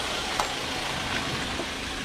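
Steady hiss of rain falling, with a few light drop ticks on the umbrella overhead.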